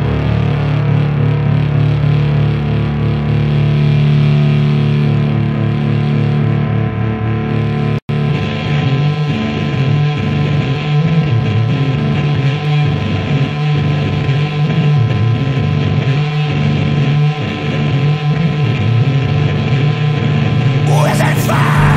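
Sludge metal: heavily distorted guitar and bass holding a droning chord that rings out at the end of a track, a brief gap about eight seconds in, then the next track starts with distorted, churning riffing.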